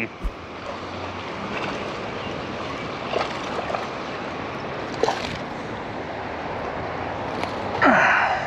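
Steady rush of flowing river water, with a splash near the end as a hooked largemouth bass is pulled to the surface.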